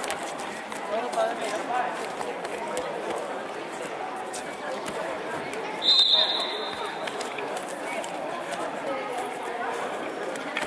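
Murmur of voices and chatter echoing in a sports hall during a wrestling bout. About six seconds in, one loud, high, steady tone sounds for about a second.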